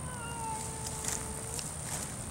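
Savannah cat giving one long meow that drops a little in pitch at first and is then held steady for about a second and a half.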